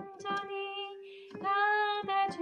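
A solo voice singing a Catholic hymn with digital piano accompaniment. A held note thins out about a second in, there is a breath, and the next phrase starts.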